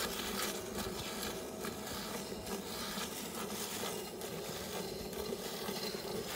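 Water buffalo being milked by hand: streams of milk squirting into a part-full steel bucket in a quick, even rhythm of about two to three squirts a second.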